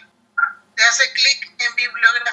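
Speech only: a woman talking in Spanish over a video call.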